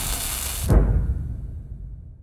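Logo sting sound effect: a whoosh that ends in a sudden low hit about three-quarters of a second in, then dies away.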